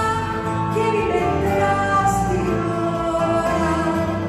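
Live performance of a Greek song: a woman singing with held, gliding notes over grand piano, double bass and a plucked string instrument, heard from the audience in a theatre.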